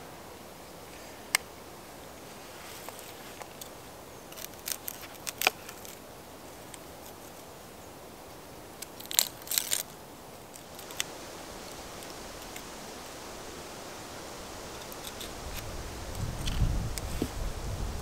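Dry onion skin crackling and tearing as an onion is peeled by hand and trimmed with a small knife: scattered sharp clicks, with a louder cluster of crackles about halfway through. A low rumble comes in near the end.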